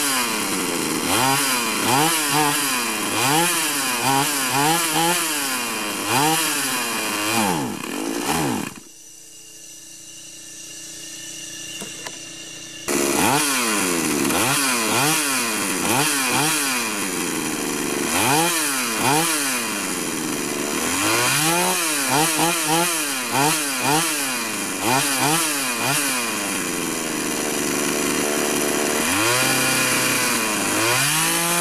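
A 49cc two-stroke pocket bike engine, running free with no load, revved up and down over and over, its pitch rising and falling about once a second. About nine seconds in, its sound drops away for some four seconds, then it comes back revving the same way.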